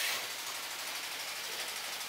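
Steady, even background hiss of the surroundings, with no distinct sound standing out.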